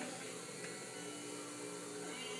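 A steady low electrical hum over quiet room tone.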